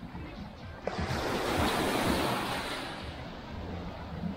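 Small shore wave breaking and washing up the sand at the water's edge: a rush of surf that swells about a second in and fades away by about three seconds.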